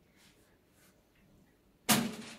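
Quiet room tone with faint handling sounds, then near the end one sudden loud sharp clack from a small countertop electric oven as it is opened to take the dough.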